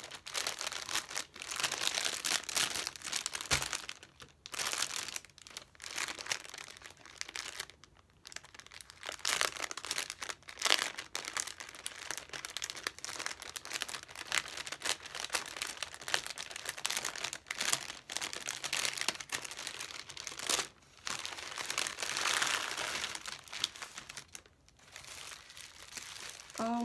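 Plastic packaging crinkling as cellophane sleeves and bubble wrap are handled and pulled apart, in irregular bursts with a few short pauses.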